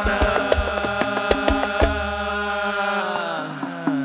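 A man's voice holding one long sung note over hadroh drums, with deep bass-drum and hand-drum strikes in the first two seconds. The drums then stop, and the note bends lower and fades near the end.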